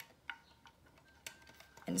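A few faint, sharp clicks from a thin metal clock hand being handled and set onto the brass shaft of the clock movement.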